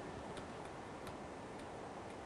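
Faint, irregular ticks of a stylus tip tapping and sliding on a tablet screen during handwriting, a few in two seconds, over a steady hiss.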